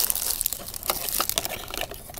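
Plastic packaging wrapped around a camera battery and charger crinkling as it is handled by hand, a run of quick irregular crackles.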